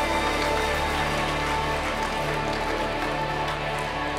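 Live worship band playing a steady instrumental passage of long-held guitar chords.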